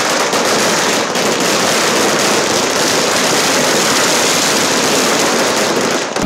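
Firecrackers bursting on the ground in a rapid, continuous crackle of bangs that runs without a break.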